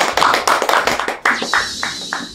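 Hands clapping in a quick, steady run of welcoming applause, with music under it; a high wavering tone comes in about halfway through.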